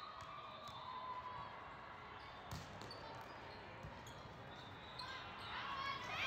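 Ambience of a large, echoing convention hall during volleyball play: a steady murmur of distant voices with the odd ball bounce on the hard court floor, and one sharp volleyball hit about two and a half seconds in. Players' voices rise and call out near the end as a rally starts.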